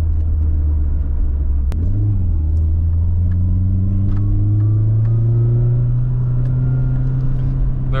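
Nissan 240SX's four-cylinder engine, fitted with an aftermarket exhaust, heard from inside the cabin while driving; its pitch rises gradually through the middle as the car picks up speed. A single sharp click about two seconds in.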